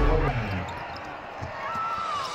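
Live basketball game sound on a hardwood court, with crowd noise and voices. There is a ball bounce about halfway through and a short sneaker squeak near the end.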